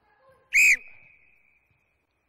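Sports whistle blown once in a short, sharp blast about half a second in, its tone trailing away over the next second.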